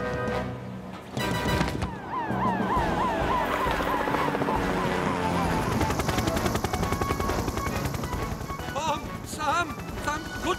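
Cartoon fire-engine siren yelping in fast repeating rising sweeps, followed by the rapid chop of a helicopter's rotor, over background music.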